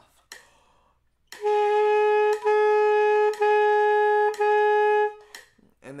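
Alto saxophone neck and mouthpiece played on their own: four tongued notes on one steady pitch, each about a second long with a short break between them, starting about a second in.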